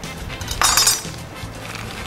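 Sealed plastic sausage package being cut and pulled open, with a brief crackle of plastic film about half a second in.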